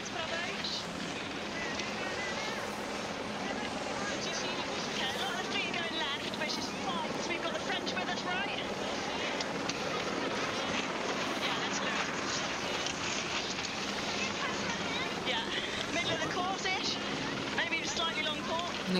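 Water and wind noise around a racing 470 dinghy in choppy water, with faint, indistinct voices and a steady low hum underneath.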